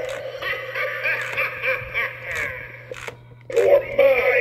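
Gemmy animated Freddy Krueger figure playing its recorded evil voice and laughter through its small speaker, with a steady low hum under it. The voice breaks off briefly a little after three seconds, then starts again.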